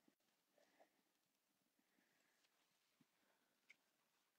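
Near silence: room tone with a few faint, brief ticks.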